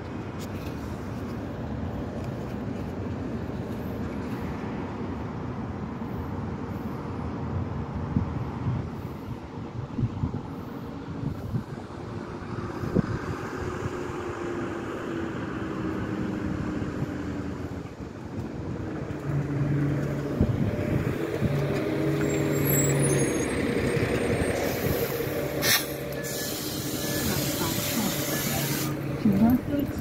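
Double-decker transit bus pulling in to a bay, its engine humming louder as it approaches. Late on it stops with a sharp burst of air hiss from the air brakes.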